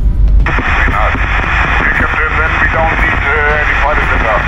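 A man's voice coming over VHF marine radio, thin and hissy with static, as the pilot station replies to the ship, over a steady low rumble.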